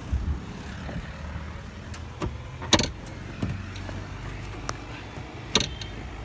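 A few sharp clicks and knocks from handling inside a car cabin, the loudest about three seconds in and another near the end, over a steady low hum.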